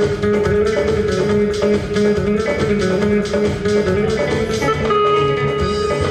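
Live band playing an instrumental passage led by an electric guitar, with a steady beat underneath; a held higher note comes in about five seconds in.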